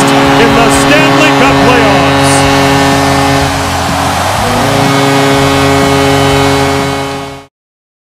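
An arena horn holding a long, steady blast over a loudly cheering hockey crowd celebrating a home win, cut off suddenly about seven and a half seconds in.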